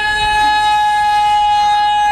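One long, loud, steady high-pitched tone with overtones, held without a break.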